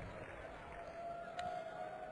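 Faint arena background noise with a thin, steady high tone running through it, and a small click about 1.4 seconds in.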